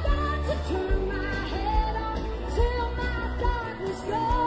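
Rock band music with a singing voice holding long gliding notes over a heavy bass line and drum hits.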